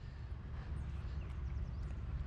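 Steady low rumble of wind on the microphone, with faint light sounds of water in the rocky shallows.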